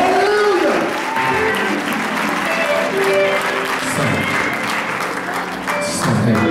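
Audience applauding, with the band's keyboard and bass playing and voices calling out over it.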